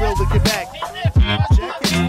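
Hip hop music from a French rap track: a beat with repeated rising synth swoops, the bass dropping out for about a second in the middle before it comes back.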